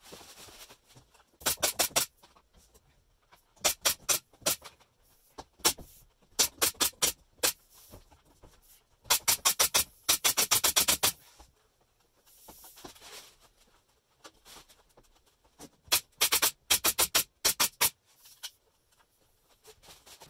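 A brad nailer firing in quick runs of sharp clicks, several shots a second, with pauses between the runs: it is fastening a bent luan plywood sheet to the camper's wooden framing.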